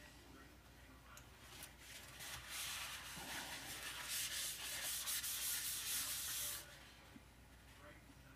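A cloth rag being rubbed and scrubbed by hand, a dry rubbing noise that builds from about two seconds in and stops suddenly past the six-second mark.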